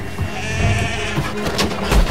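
A sheep bleats once, a quavering cry about half a second in, over dramatic background music with low drum hits.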